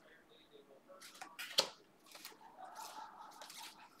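Faint handling noises of trading cards in plastic sleeves and holders being moved in the hands: a few soft clicks and rustles, the sharpest about a second and a half in.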